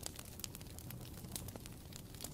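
Faint campfire crackling: a few soft, irregular pops over a low hiss.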